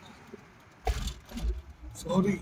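Car crossing a speed bump, heard from inside the cabin: two thuds with a low rumble, the first sudden and loud about a second in, the second about half a second later as the other axle goes over.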